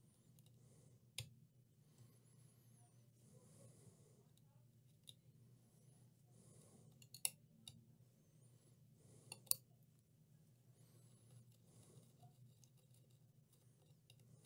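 Near silence over a faint low steady hum, broken by a few short sharp clicks of metal tweezers working at burnt layers of a laptop motherboard.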